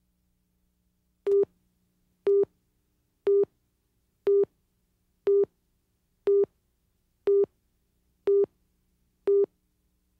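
Countdown leader beeps on a broadcast tape master: nine short beeps of one steady tone, one each second, starting about a second in, with silence between them. The beeps tick off the seconds counting down to the start of the programme.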